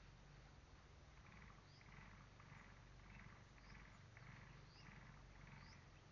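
Faint, rhythmic rasping strokes, about two a second, starting about a second in, from wood being cut by hand for firewood, over a low steady hum.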